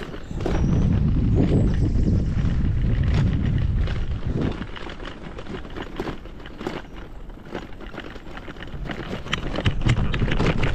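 Loaded touring bicycle rolling over cobblestones, with tyres drumming and the bike and its bags rattling in a fast run of sharp knocks. Heavy wind rumble on the microphone for the first few seconds.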